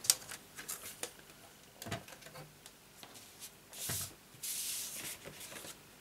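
Soft handling sounds as a scoring board is brought in and set down on a craft mat: scattered light clicks and knocks, then a brief sliding scrape about four and a half seconds in.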